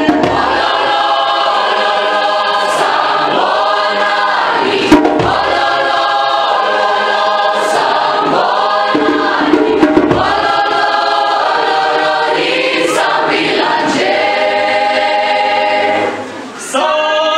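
A large mixed youth choir of men and women singing unaccompanied in full harmony, in phrases of held chords. There is a single sharp hit about five seconds in.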